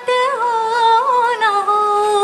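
A solo female voice singing unaccompanied, holding one long wordless note with small ornamental turns, then stepping down to a lower note about one and a half seconds in.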